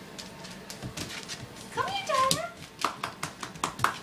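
A person's high-pitched voice sounds briefly about halfway through, then a quick run of sharp clicks and taps follows.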